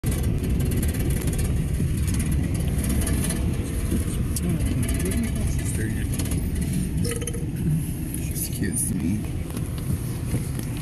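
Steady low rumble of road and engine noise inside a car's cabin, with faint voices under it.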